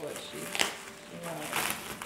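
Packaging on a gift being unwrapped crinkling and rustling in short bursts, the sharpest about half a second in and again near the end, under low voices.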